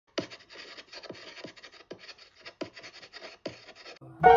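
Chalk scratching across a blackboard, a continuous scratchy rasp punctuated by a sharp tap of the chalk about every half second.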